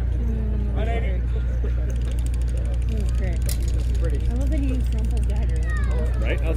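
Indistinct voices over a steady low rumble, with one faint click about three and a half seconds in.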